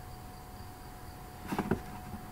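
Faint steady background hum with a thin, steady whine, and a brief cluster of faint short sounds near the end.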